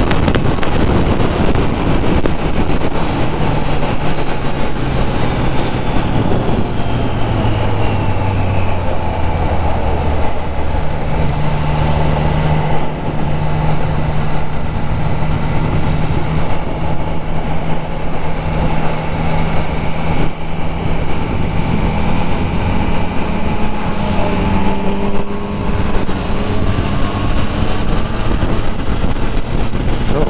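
Triumph Trident 660 three-cylinder engine running under way, with wind rushing over the helmet microphone. The engine note drops a few seconds in, then rises and holds steady from about eleven seconds on.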